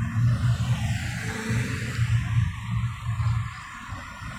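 Street traffic at a busy intersection: a low hum that comes and goes, under a steady hiss of road noise.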